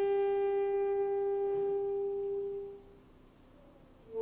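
High school concert band holding one long sustained note on winds and brass, which dies away about three seconds in.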